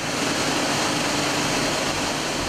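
Steady rushing noise of liquid and curd pouring into a cheese vat, over the running factory machinery, with a faint steady hum.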